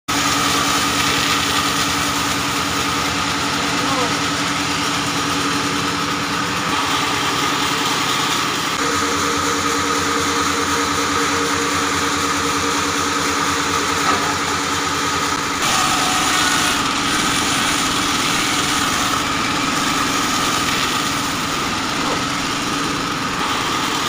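An engine-driven band sawmill runs steadily with a continuous mechanical drone while cutting logs. Its tone shifts a few times, about a third of the way in and again past the middle.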